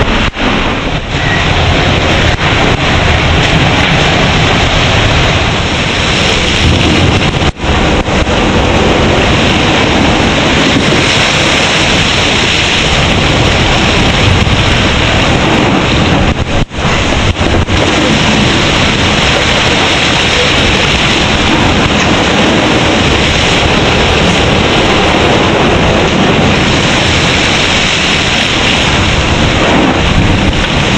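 Wind and rushing sea water on the deck of a Volvo Open 70 racing yacht sailing fast through rough seas, with heavy wind buffeting the microphone. The noise is loud and steady, with two brief dips, about a quarter and just over halfway through.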